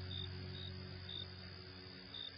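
Crickets chirping, short high chirps about twice a second over a faint steady hiss, as the last low notes of slow ambient music fade out.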